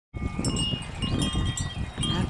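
Tubular wind chimes ringing, several clear tones starting at different moments, overlapping and dying away, over a low, uneven rumble.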